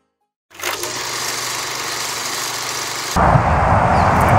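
Half a second of silence, then steady outdoor background noise. About three seconds in it cuts abruptly to louder outdoor noise with a low rumble.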